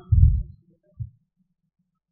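Two low, muffled thumps picked up by the microphone: a longer one just after the start and a short one about a second in, with near silence between them.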